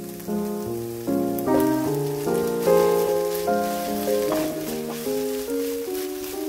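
Background music with a melody of quickly changing notes, over the sizzle and crackle of carrot chunks tipped into a hot frying pan of softened onions. A cluster of sharp clicks and clatter comes about four seconds in.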